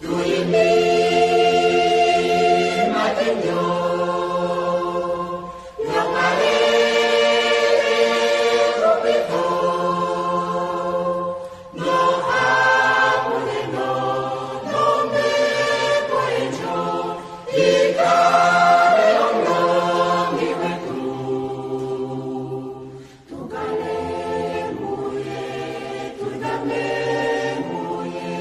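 A choir singing an Oshiwambo gospel song, in long phrases of about six seconds with brief breaks between them.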